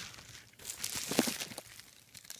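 Plastic bubble wrap and packaging crinkling as hands handle it, a burst of crackling in the middle with its sharpest crackle just after a second in.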